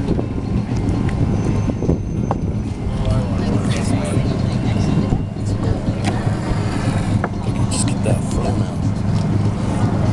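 A loud, steady low hum with voices in the background, and scattered light clinks of glass and ceramic teaware being handled as tea is poured.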